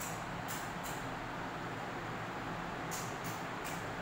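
Steady background hiss with five brief, soft high swishes, two in the first second and three close together near the end.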